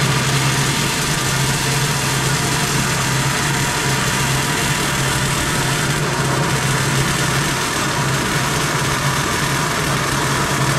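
Vertical metal-cutting bandsaw running with its blade cutting through sheet metal: a steady low motor hum under a continuous hiss from the cut.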